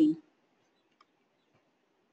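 Near silence of a small room with a single faint click about a second in, as the presentation advances to the next slide.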